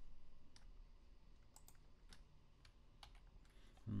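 Faint, scattered clicks of a computer mouse and keyboard keys, about eight in all, as measures are selected and then copied and pasted with keyboard shortcuts.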